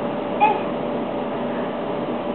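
One brief high-pitched animal call about half a second in, over a steady background hiss.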